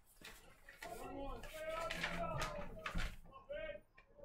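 Faint background voices talking, low under the broadcast, with a few light clicks.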